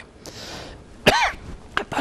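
A man coughs once, sharply, about a second in.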